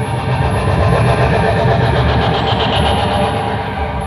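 Dark ambient electronic score: a steady, dense low drone with a fluttering, noisy texture above it.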